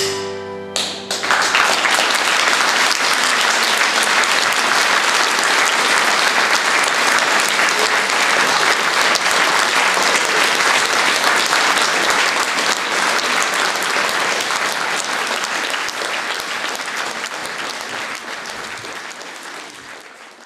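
The closing chord of piano, violin and accordion ends in the first second, and then an audience breaks into applause. The applause is steady, then fades away toward the end.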